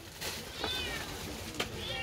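A cat meowing twice: two short, high calls that fall in pitch, about a second apart.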